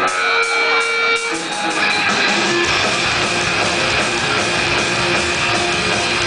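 Live rock band playing amplified electric guitars as a song starts. Held guitar notes ring over the first second, then the full band comes in with a heavier low end about two and a half seconds in.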